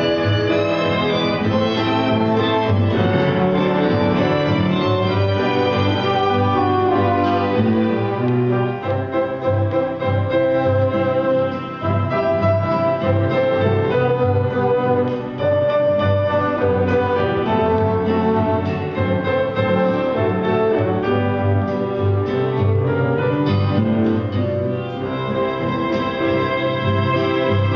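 A small chamber ensemble of piano, woodwinds, bowed strings and classical guitar playing a song in the litoral folk style, with a steady, sustained texture and a moving melody over it.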